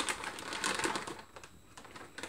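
Metallised anti-static bag crinkling and crackling as a graphics card is slid out of it. The crackle is dense through about the first second, then dies down to a lighter rustle.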